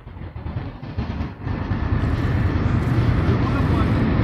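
Street traffic noise: a steady low rumble that swells about a second and a half in and then holds.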